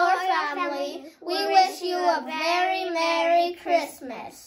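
Children singing, with long held notes and a short break about a second in.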